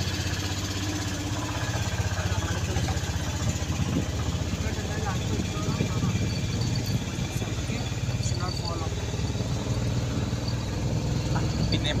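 A vehicle's engine running steadily as the vehicle drives along a road, a low continuous drone heard from on board.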